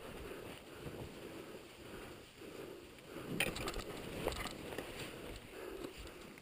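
Boots plunging into soft powder snow on a steep descent on foot: faint crunching steps about once a second, with a couple of sharper crunches around the middle.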